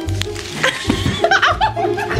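A person chuckling and laughing, in short pitched bursts, over background music with a low bass line.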